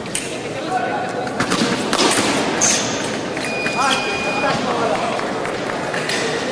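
Foil fencing bout in a large hall: fencers' footwork and sharp clicks of blade contact, with voices in the hall behind. About halfway through, an electronic tone sounds for about a second as the scoring apparatus signals a hit and the bout is halted.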